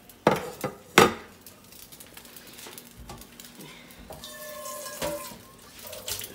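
Kitchenware knocking on the counter: two sharp clacks about a second apart near the start, then quieter handling and faint clinks of dishes and utensils.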